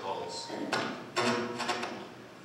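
A man's voice reciting words of the liturgy in short phrases.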